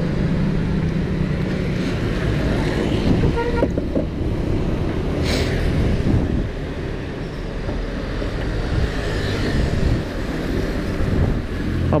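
Two-stroke Vespa scooter engine running, first at idle and then pulling away and riding along a street, with other traffic passing. A short, sharp high-pitched sound about five seconds in.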